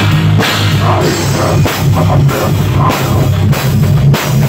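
Live rock band playing loudly, heard from right beside the drum kit: driving drums with cymbal crashes over bass guitar.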